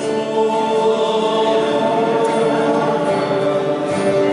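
Music: a group of voices singing a slow religious song in long held notes.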